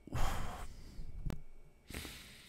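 A man's breathy exhale, a sigh into a close microphone, with a single sharp click a little after a second in and a second exhale starting near the end.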